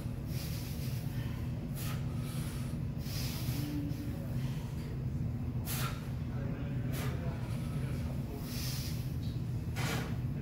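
Short, sharp, hissing breaths from a man straining through pull-ups, about four strong ones spaced a second or more apart with softer breaths between, over a steady low hum.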